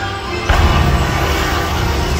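Loud dramatic show music with a sudden burst from a pyrotechnic fireball going off about half a second in.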